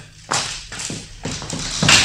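Sound-effect footsteps on a hard floor: about six quick, sharp steps, the last one louder and sharper, as someone goes to let a visitor in.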